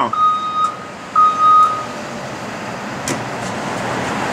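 Electronic warning beeper sounding a steady single-pitched beep, twice, in the first two seconds. It is followed by a rushing noise with a faint click or two that grows louder toward the end.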